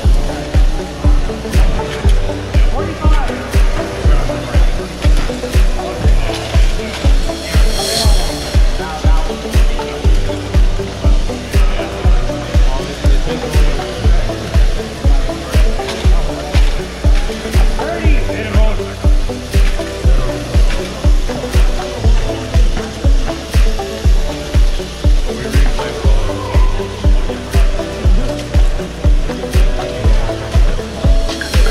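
Loud music with a steady bass beat, about two beats a second, with voices talking underneath.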